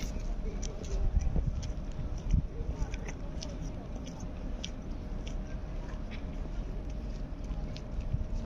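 Wind rumbling on the microphone outdoors, with scattered small clicks and crackles and faint distant voices.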